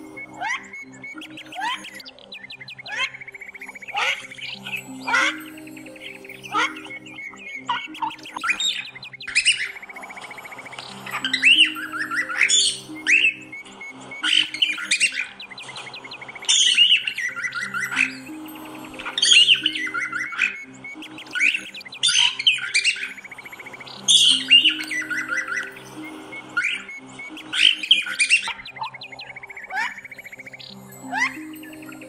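Cockatiel chirping and squawking in short, sharp calls about once a second, louder and more frequent from about a third of the way through, over soft background music.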